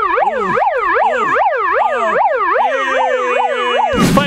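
Handheld megaphone's built-in siren sounding a rapid warbling wail that sweeps down and up about three or four times a second. A steady tone joins it near the end.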